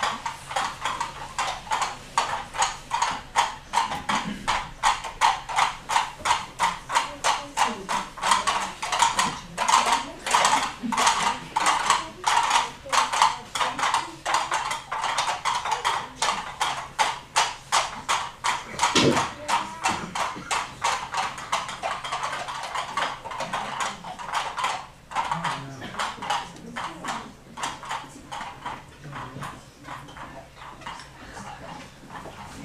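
Rhythmic clip-clop, about three sharp beats a second, imitating horses' hooves; it grows louder and then fades away towards the end.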